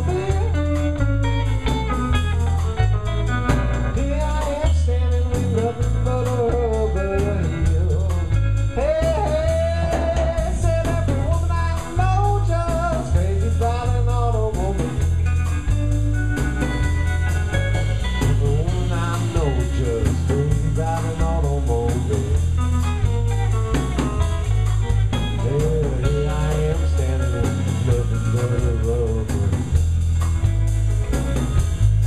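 Live blues trio playing: electric guitar, bass and drum kit. Lead lines that bend up and down in pitch run over a steady bass-and-drum beat.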